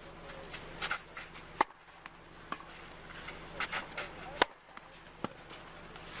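Tennis ball hit by a racket: two sharp cracks, one about a second and a half in and another about four and a half seconds in, with a few fainter ticks between.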